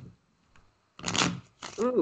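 Tarot cards being handled: a card is drawn and turned over, with two short papery sweeps about a second in. A woman starts speaking at the very end.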